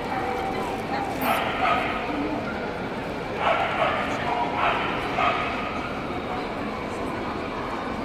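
A small dog yapping in short bursts, three or four times, over steady crowd chatter.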